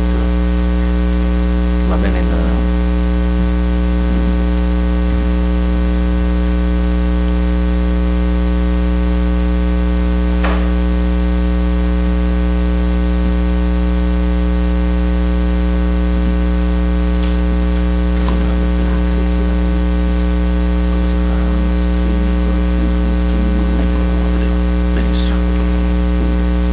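Loud, steady electrical mains hum with a stack of buzzy overtones, unchanging throughout, with a few faint clicks.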